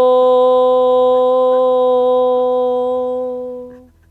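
A woman holding one long, steady 'hooo' note at one pitch. It is the soothing 'ho' a mother breathes over a child's hurt, given here as comfort. It fades out shortly before the end.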